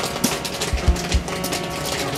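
Background music with a drum beat and held instrument notes.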